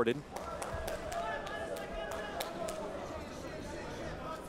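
Steady crowd murmur in an arena, with a string of sharp slaps a few times a second as two freestyle wrestlers hand-fight, slapping at each other's hands and arms.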